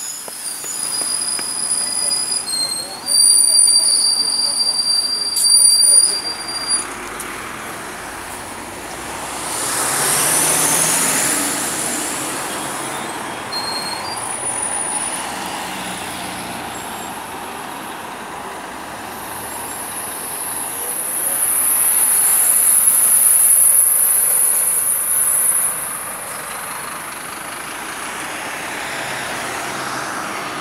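Street traffic: vehicles passing on the road, their noise swelling about ten seconds in and again for several seconds around twenty seconds in. High thin whistling tones sound on and off in the first six seconds.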